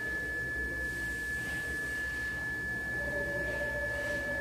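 A steady high-pitched whine holding one pitch throughout, over a low hum; no speech.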